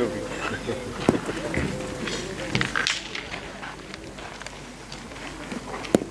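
Players talking in the background, with a sharp click about a second in and another near the end: steel pétanque boules knocking together on the gravel pitch.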